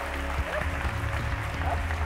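Audience applauding over background music with steady held low tones, with faint voices in the crowd.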